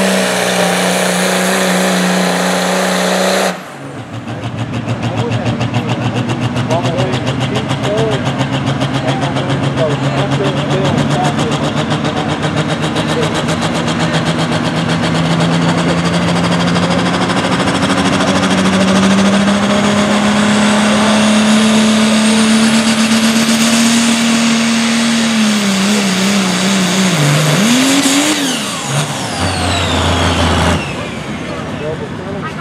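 Diesel pickup truck engines at full throttle pulling a weight-transfer sled. The first truck's steady run breaks off at a cut a few seconds in. A second truck then pulls, its engine pitch climbing slowly, then dropping and wavering near the end, with a faint high whistle above it.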